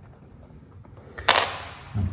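Small objects handled on a laminate floor: one sharp knock about a second in, trailing off in a short scrape, and a soft thump at the end.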